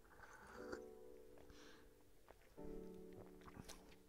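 Faint soft background music: two held keyboard chords, one entering just after the start and another a little past halfway.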